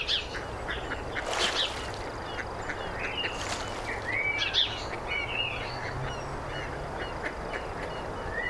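Birds calling: many short, overlapping chirps and calls, some sliding up or down in pitch, over a steady outdoor background rumble.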